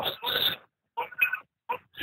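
The end of a man's spoken sentence, then a short pause holding a few brief, quiet vocal sounds before talk resumes.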